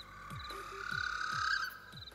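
Night ambience of frogs croaking in an even rhythm, about three croaks a second, with high pulsed insect trills. Over it an eerie rising tone swells for about a second and a half and cuts off suddenly.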